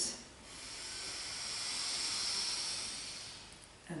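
One long, slow, deep inhale through the nose, a hiss that swells and then fades over about three and a half seconds, paced to a count of eight as part of Kundalini long deep breathing.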